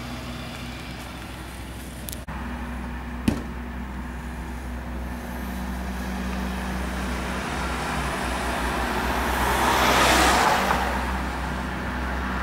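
Road traffic: a steady engine hum under passing cars, with one car going by close, loudest about ten seconds in. A single sharp knock comes about three seconds in.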